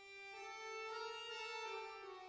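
Live chamber music from a small ensemble of flute, violin, accordion and acoustic guitar: held notes, with a new chord coming in shortly after the start and swelling.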